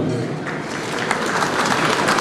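A crowd applauding: many hands clapping in a dense patter that grows louder in the second half.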